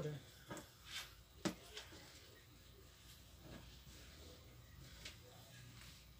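Faint handling sounds of hands smoothing a crocheted cotton-twine rug flat on a table, with a few soft clicks or taps in the first two seconds; otherwise quiet room tone.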